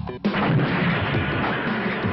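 The music drops out for a moment. About a quarter-second in, a sudden loud boom sets off a sustained rumbling rush that carries on under the trailer's score: a film sound effect for the collision of a bicycle with two people.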